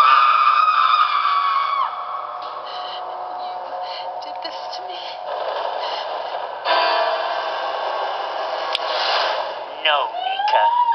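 Horror-film soundtrack heard through a TV speaker: a woman's drawn-out scream breaks in suddenly and holds for about two seconds, then falls away. Tense score and effects follow, swelling louder again about two-thirds of the way in.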